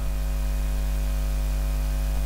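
Steady, fairly loud low electrical mains hum with a faint hiss.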